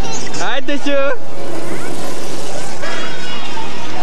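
Young children's voices on a kiddie ride, with one high-pitched child's shout or squeal from about half a second to a second in, over background chatter of people nearby.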